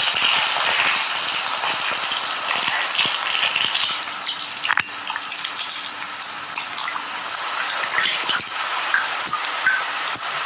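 Water running steadily into a bathtub from a tap, with a single sharp knock about five seconds in.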